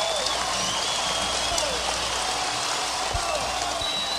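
Large outdoor festival crowd: a steady wash of crowd noise with scattered distant voices, and a few high, sliding tones now and then.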